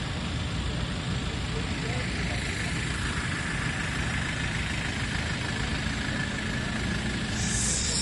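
Engines of cars and vans idling in a stationary traffic queue, a steady low rumble, with a brief hiss near the end.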